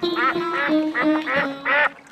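A duck quacking several times in quick succession over steady backing music for the children's song.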